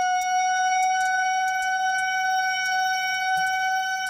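Horror film soundtrack: a single high-pitched tone with overtones, held at an unchanging pitch, over a faint low hum and scattered faint crackles.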